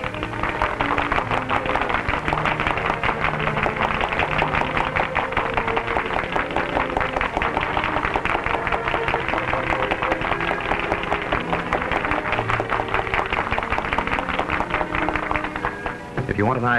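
A theatre orchestra plays a lively stage number, with a rapid, continuous clatter of tap-dancing feet over it, on a dull early sound-film soundtrack.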